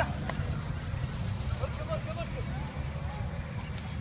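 Steady low outdoor rumble with faint distant voices now and then.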